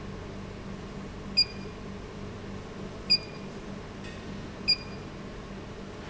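Touchscreen operator panel (HMI) giving three short high beeps, about one every 1.6 s, the key-press feedback as its on-screen buttons are tapped. A steady low hum runs underneath.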